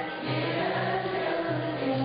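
A Turkish classical music choir singing a slow, flowing melody, over a low accompaniment note that repeats in a steady rhythm.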